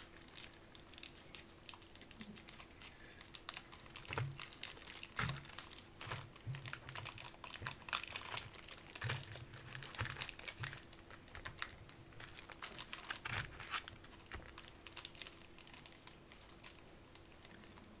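Pokémon card booster packs being opened and the cards handled by hand: foil wrappers crinkling and a quick, irregular run of soft clicks and rustles as cards are shuffled and tapped. A faint steady hum runs underneath.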